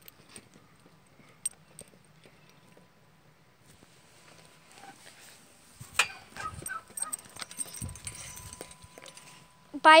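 Footsteps on grass and fallen leaves, with handling of the phone. It is faint at first, then scattered soft knocks and rustles start about six seconds in.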